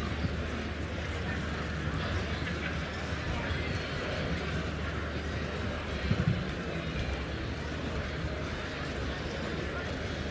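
Horse cantering on a grass show-jumping course under a murmur of spectators' voices and a steady low rumble, with a short cluster of heavier hoof thuds about six seconds in.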